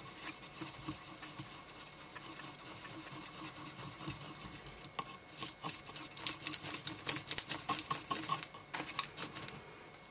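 Wooden skewer stirring five-minute two-part epoxy with glitter on a post-it pad: quiet, fast scratchy ticking that gets busier and louder about halfway through, then eases near the end.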